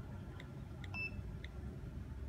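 Faint clicks of a smartphone's on-screen keyboard as a password is tapped in, about four taps, one of them a higher click, over a low steady hum.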